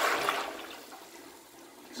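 Ceramic toilet flushing into a blocked bowl: the rush of flush water fades out over about the first second.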